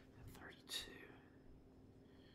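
Dry-erase marker writing on a whiteboard: faint strokes with one brief, sharper squeak a little under a second in.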